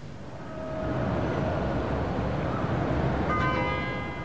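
A bell strikes about three seconds in and its tones ring on, over a steady background of noise.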